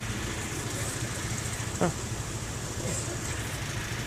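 Steady road traffic noise from cars on a street, a continuous engine and tyre hum, with one short sliding tone about two seconds in.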